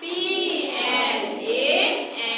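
Voices reciting vocabulary words slowly in a sing-song chant, as in a repeat-after-me word drill. Each word is drawn out, with one held on a level pitch and another rising near the end.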